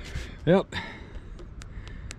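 A man's voice saying a short "yep", then quiet background with a few faint clicks.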